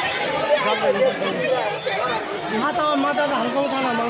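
Several people talking at once, their voices overlapping in a steady babble of close-by chatter.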